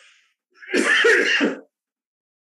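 A man clears his throat with a cough into his hand: one burst about a second long, starting about half a second in.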